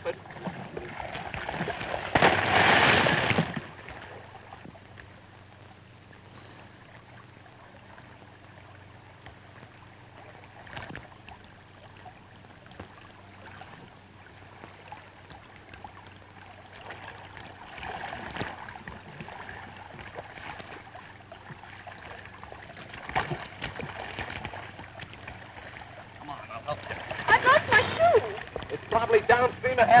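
A splash about two seconds in as a man drops down into shallow river water, lasting about a second and a half. After it comes a faint water background over the old soundtrack's steady hum, and voices come back near the end.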